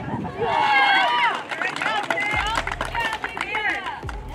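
Several girls' excited, high-pitched voices at once, overlapping squeals and chatter as teammates celebrate a championship win.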